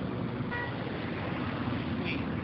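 Steady outdoor background noise with a low rumble, and a brief high tone about half a second in.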